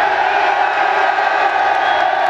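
Large crowd cheering and shouting, many voices overlapping at a steady level.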